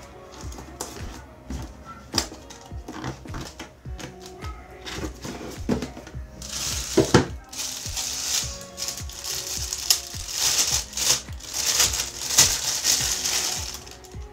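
Plastic wrapping crinkling steadily for the second half, as a camera body is unwrapped from its plastic bag by hand. Before that come scattered clicks and knocks of a cardboard box being handled. Background music runs underneath throughout.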